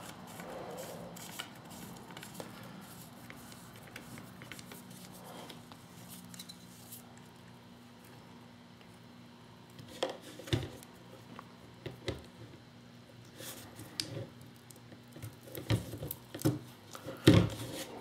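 Small clicks and taps of a paintball marker's macro air line and its metal fitting being handled and pushed back into the marker, over a faint steady hum. The clicks are sparse at first and come more often in the second half.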